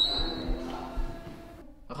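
An iron-barred gate being pushed open, with a brief high hinge squeak at the start, followed by a couple of footsteps on a stone floor.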